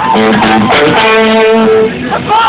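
Amplified electric guitar playing a few short notes, then holding one note for about a second before it cuts off near the end.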